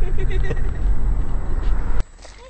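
Car cabin noise while driving: a steady, loud low rumble of engine and road, which stops abruptly at the end.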